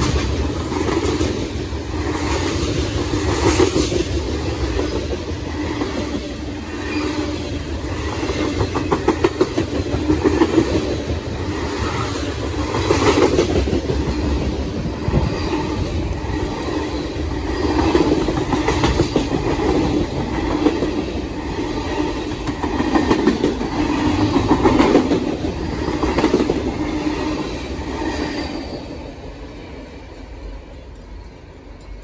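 Freight train cars rolling past, their wheels clattering over the rail joints in a repeating rhythm over a steady rumble; the sound dies away near the end.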